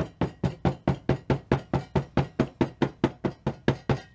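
A plastic pouring bowl of thick cold process soap batter knocked rapidly and evenly on a table, about five knocks a second, to bring trapped air bubbles up out of the batter.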